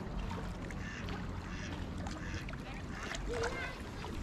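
Small waves lapping against a stony lake shore, with a steady low wind rumble on the microphone.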